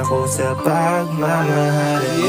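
A Tagalog rap love song playing. The bass and beat drop out about half a second in, leaving sustained chords.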